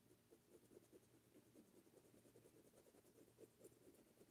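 Very faint, quick strokes of a small paintbrush working paint onto taut fabric in an embroidery hoop, several strokes a second, over a faint steady hum.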